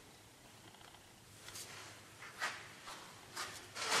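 Quiet handling noises at a stopped wood lathe: a few brief scrapes and rustles, then a sharper knock near the end as the tool rest is moved into place.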